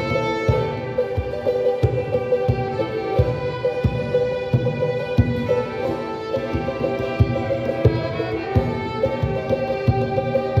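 A small ensemble of violins playing a slow melody together in long bowed notes, with a steady low beat about every half-second underneath.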